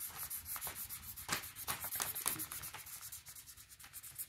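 Felt-tip marker scribbling on paper, quick rubbing back-and-forth strokes about three or four a second while colouring in a shape, a little softer towards the end.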